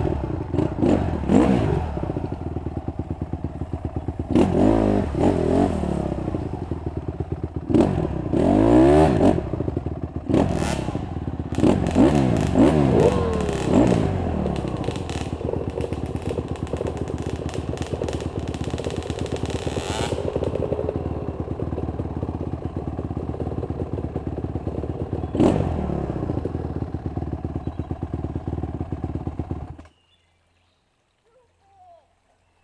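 Dirt bike engine working along a rough trail, the revs rising and falling sharply several times in the first half with the throttle, then running more evenly. Knocks and clatter of the bike jolting over the ground come through, with one sharp knock a little after the middle.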